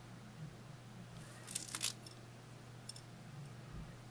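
Faint handling sounds of yarn being wrapped and pulled on a metal latch hook: a brief cluster of rustles and small clicks about one and a half seconds in and a single small click near three seconds, over a steady low hum.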